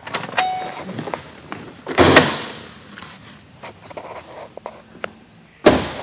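2010 Ford Explorer's driver door opened with a clunk about two seconds in and shut with a loud slam near the end, with small clicks and rustles between. A brief tone sounds near the start.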